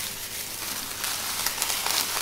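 Plastic bag and paper wrapping rustling and crinkling as a hand inside the plastic bag lifts sterile gloves out of their paper sleeve.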